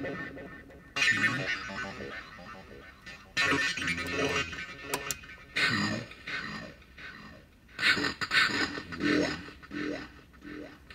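A voice sent through a circuit-bent telephone's voice changer, spring reverb and PT2399 delay: several short bursts of garbled, pitch-shifted vocal sound, each fading away in echoes.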